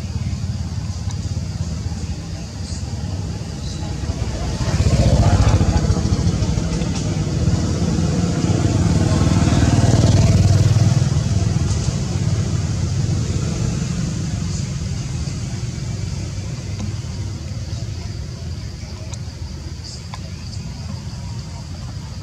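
Motor vehicle engine rumbling low and steady, swelling louder twice, about five and ten seconds in, as if passing, then fading.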